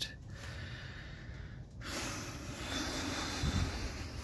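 A person breathing close to the microphone: fairly quiet at first, then a long, noisy breath from about halfway through, with a soft low bump near the end.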